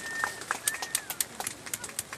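Raindrops striking a taut umbrella canopy overhead: irregular sharp taps, many a second. A thin high whistled note sounds at the start, then a short one rises and falls.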